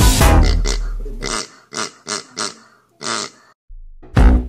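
Background music fades out, then five short pig-like oinks follow in quick succession from a child playing at being a pig. The music starts again right at the end.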